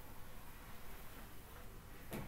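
Quiet room tone: a faint, steady background hiss with no distinct sound.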